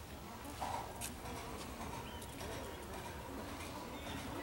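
Faint bird calls, one short call about half a second in, over a low steady outdoor background hum.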